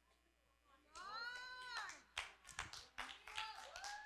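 After about a second of near silence, a congregation reacts faintly: a single high voiced call that rises and falls, then scattered hand claps.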